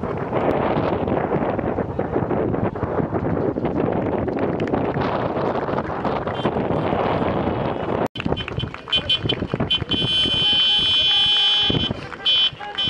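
Wind buffeting the microphone over an outdoor football ground. After a sudden break about eight seconds in, horns sound in repeated toots.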